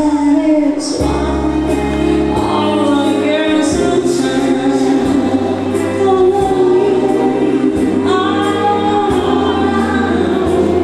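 A woman sings live into a hand-held microphone over amplified instrumental backing. The backing has a steady bass line and a regular beat of light high ticks.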